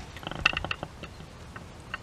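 A quick cluster of small metallic clinks and clicks about half a second in, with one more click near the end, typical of a dog's leash and collar hardware jingling as the dog walks at heel.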